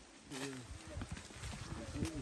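Footsteps of hikers on dry fallen leaves and stone steps, a series of short irregular steps. Indistinct voices of people talking come in about a third of a second in.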